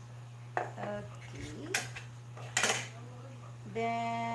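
Measuring cups and metal measuring spoons clattering against a plate and bowl while sugar is measured out. There are three sharp clinks, the last the loudest.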